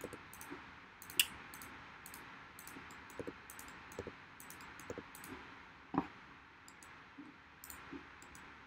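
Scattered faint clicks of a computer mouse and keyboard being worked, irregular, with a sharper click about a second in and another near six seconds, over a low steady hiss.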